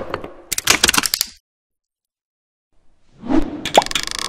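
Animated-intro sound effects: a quick run of clicks and pops, about a second and a half of silence, then a swell of noise that ends in a sharp click.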